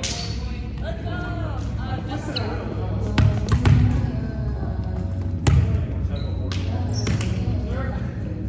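A volleyball thudding on a hardwood gym floor, several sharp bounces, the loudest about halfway through, among players' voices.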